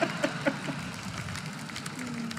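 A theatre audience laughing and clapping at a stand-up punchline: a steady wash of crowd noise scattered with quick hand claps. A man's short bursts of laughter sit on top of it in the first half second or so.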